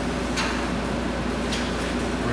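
Steady room hum with two brief light clicks, about half a second in and about a second and a half in, as a plastic oil funnel is handled in the filler of a motorcycle's oil tank.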